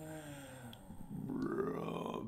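A man's low, drawn-out wordless vocal sounds, like a grunt or groan: one held sound that sinks in pitch, then a second that rises near the end.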